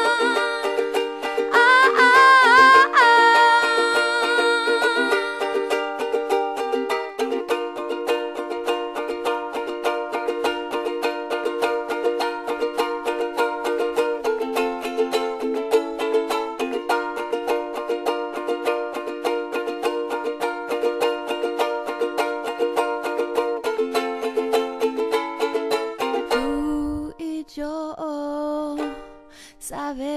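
Ukulele strummed in a steady, even rhythm of chords. A woman's singing voice sits over it in the first few seconds. Near the end the strumming thins out and grows quieter.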